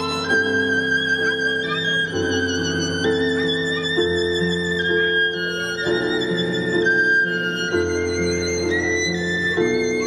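Violin playing a slow melody of long held notes with vibrato, over a keyboard accompaniment of steadily changing chords.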